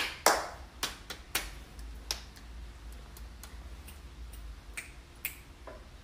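A run of sharp hand snaps and claps at an uneven pace, loudest in the first second and a half, then fainter and sparser.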